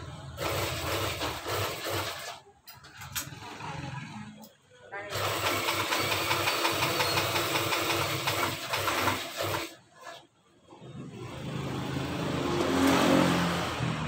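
A motor running in bursts of a few seconds, stopping and starting again several times, with the longest run in the middle.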